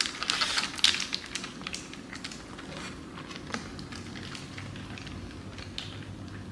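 Close-up chewing and crunching of a mouthful of burrito topped with crisp tortilla chips: a dense run of crackly crunches in the first second, then sparser chewing clicks.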